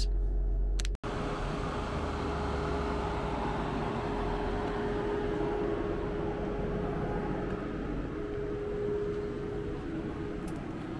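Tesla Model 3's cooling system running steadily under the bonnet during its service-mode battery health test: a steady fan-like whoosh with a thin constant whine.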